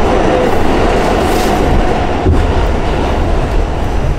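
Subway car running, heard from inside the car: a loud, steady rumble and rattle of the wheels on the track, with a whine in the first half and one sharp clunk a little past halfway.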